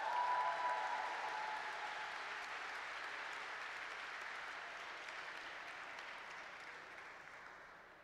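Audience applauding, loudest at first and dying away over about seven seconds.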